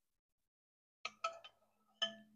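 A metal spoon clinking against a saucepan and a ceramic bowl while boiling water is spooned out: a few light clinks about a second in, and one more with a short ring near the end.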